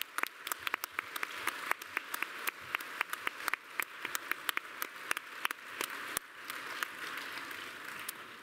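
Audience applauding: dense clapping that fills the hall and thins out near the end.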